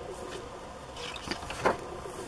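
A hand turning a page of a spiral-bound paper scrapbook: soft paper rustling, with a short louder rustle about one and a half seconds in.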